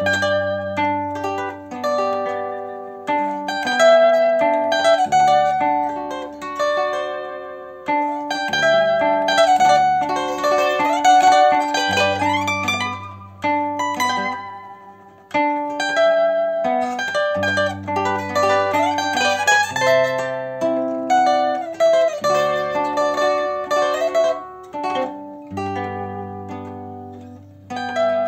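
Concert zither played solo: a melody plucked on the fretted strings over bass notes and chords on the open accompaniment strings.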